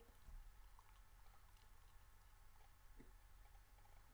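Near silence: room tone, with one faint short soft sound about three seconds in.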